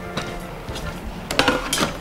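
A few light clicks and knocks as a stainless-steel thermal coffee carafe and its lid are handled and set into a drip coffee maker, the sharpest about a second and a half in.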